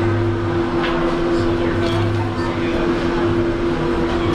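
Steady low mechanical hum holding two unchanging tones, with indistinct background voices.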